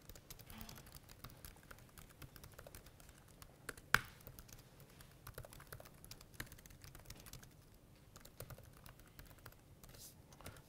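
Faint typing on a computer keyboard: a run of quick, irregular keystrokes, with one sharper key strike about four seconds in.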